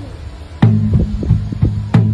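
A drum played by hand: soft strokes at first, then a loud stroke a little past half a second in whose low, humming tone rings on under several lighter strokes.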